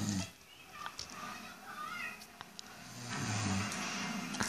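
A sleeping old man snoring: a low, rattling snore fading out at the start and another breath-long snore about three seconds in. Between them comes a brief higher wavering sound.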